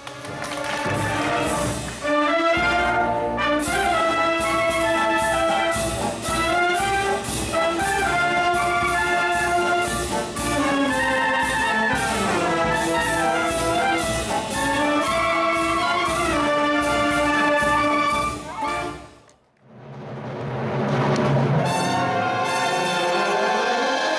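Wind band playing, with clarinets, saxophones and brass over a steady percussion beat. Near the end the music fades out almost to nothing and another music passage fades in.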